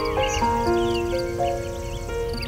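Slow, soft piano music with held, overlapping notes, over birds chirping in short, quick calls.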